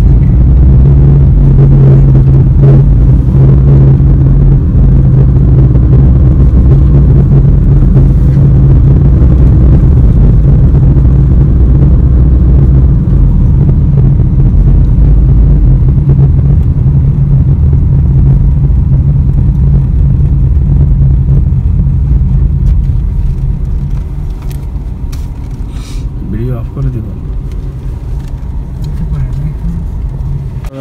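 Loud, steady low rumble of a car driving, heard from inside the cabin, with a constant low hum; it eases off a little past two-thirds of the way through.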